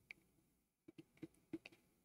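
Near silence with a handful of faint, short clicks, most of them in the second half.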